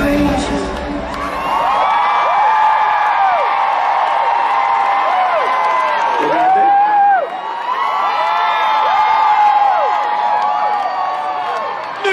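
Concert crowd screaming and cheering, many high voices overlapping in long rising-and-falling shrieks. The band's music, bass included, fades out in the first second or two.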